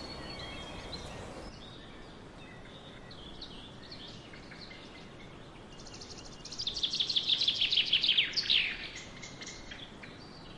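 Songbird singing: scattered quiet chirps, then about six and a half seconds in a loud, fast twittering run of rapidly repeated downward-sliding notes lasting about two seconds, followed by a few more calls.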